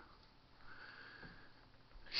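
Near silence: room tone, with a faint breath through the nose lasting about a second, starting about half a second in.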